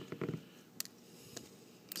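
Faint clicks of hard plastic toy parts being handled as a small gun accessory is pulled off an action figure: a few small clicks near the start, then two single clicks.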